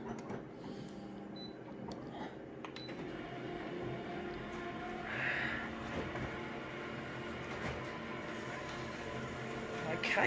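Konica Minolta colour office copier running a copy job: a steady machine hum with a few clicks and a brief hiss about five seconds in, as the enlarged copy feeds out into the output tray near the end.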